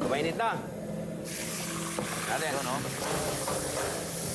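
Beef chunks going into hot oil in a non-stick wok: a loud sizzle starts suddenly about a second in and continues steadily as the meat begins to brown.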